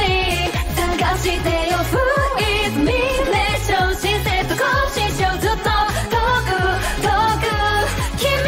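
Japanese pop song: a female voice singing the melody over a band track with a steady beat.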